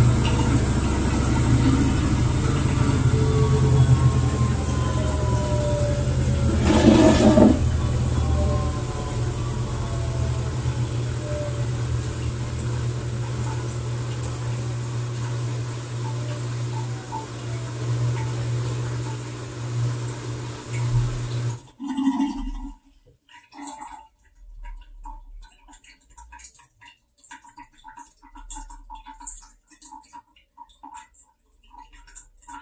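TCL TWF75-P60 direct-drive inverter front-load washer in its final spin: a steady low hum with a whine falling in pitch as the drum slows, with a short rush of water noise about seven seconds in. The motor hum cuts off abruptly a few seconds past twenty seconds in, followed by faint clicks as the drum comes to rest.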